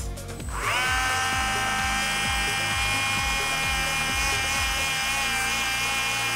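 TACKLIFE 8V cordless mini rotary tool (RTD02DC) spinning up about half a second in, then running at a steady high whine. It drives a felt polishing bit with fine compound against a wrench.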